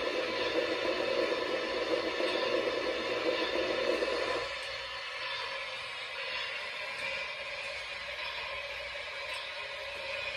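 MTH Premier Empire State Express model steam locomotive's Proto-Sound 3 boiler blowdown effect: a loud rushing hiss of steam from its onboard sound system that cuts off suddenly about four and a half seconds in. A fainter steady hiss carries on after it.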